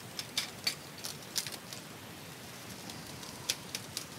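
A cardboard card box being cut open with a dull box cutter and handled: a quick run of short scratches and clicks in the first couple of seconds, and two more near the end, over a steady hiss.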